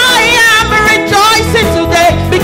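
Live gospel song sung by a lead singer and church choir over a band accompaniment, on the line "I am rejoicing today".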